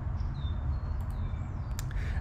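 A few short, high bird chirps over a steady low rumble of outdoor background noise, with a couple of faint clicks near the end.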